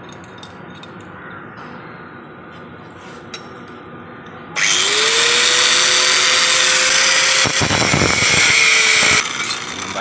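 An electric angle grinder is switched on about halfway through, its motor whine rising as the disc spins up, and runs loud for about four and a half seconds, cutting a piece of steel, before it is switched off.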